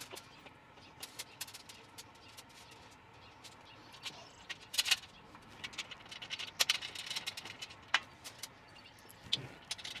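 Scattered light metal clicks, taps and rattles of kettle-grill hardware being handled and fitted, with a few sharper knocks around the middle.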